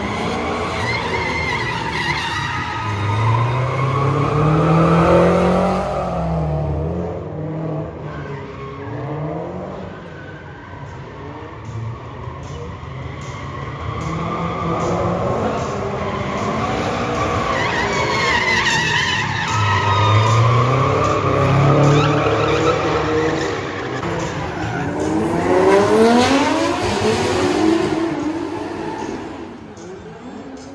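Drift cars sliding past at high revs, their engines rising and falling in pitch over screeching, skidding tyres. It comes in loud passes, about five seconds in, again around twenty seconds and near twenty-six seconds, quieter in between, and fades near the end.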